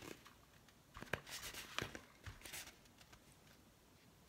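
Faint scratchy rubbing as a hard-shelled gourd is turned against a pencil point held at a fixed height, scribing a line around it, with two light clicks about a second in and just before two seconds.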